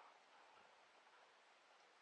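Near silence: faint background hiss.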